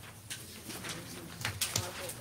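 Sheets of paper rustling and being shuffled, a run of short crackles, loudest about one and a half seconds in.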